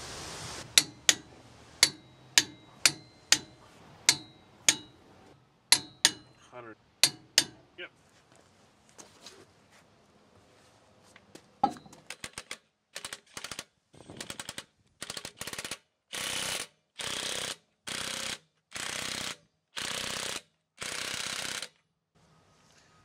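Sharp metallic clicks of a hand ratchet wrench tightening wheel-spacer nuts on a truck hub, about two a second for several seconds. After a pause, a run of short, even bursts from a cordless power tool, about one a second, as the wheel's lug nuts are run down.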